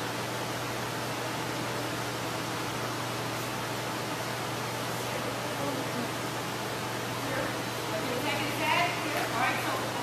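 Steady hiss and low hum of a large indoor hall's background noise, with faint voices coming in near the end.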